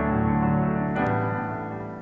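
Slow instrumental piano music playing held chords, moving to a new chord about a second in and fading out near the end.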